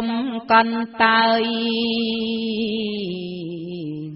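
Khmer smot, a Buddhist verse chanted solo by a woman in a slow, drawn-out melody: a few short phrases, then one long held note from about a second in that steps down in pitch near the end.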